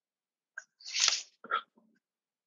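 A person's forceful burst of breath, with a small catch before it and a shorter burst after, heard through a video-call microphone that cuts to silence in between.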